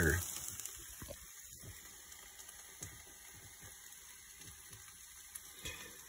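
Faint sizzle of diced potatoes frying in a pan, with scattered small crackles.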